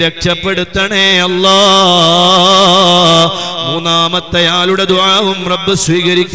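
A man's voice chanting melodically through a public-address system, holding long notes whose pitch wavers and curls in ornaments, with a few brief breaks for breath.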